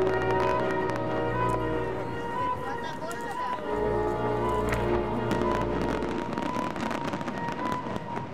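Fireworks banging and crackling, with a denser run of sharp reports in the middle, under classical orchestral music.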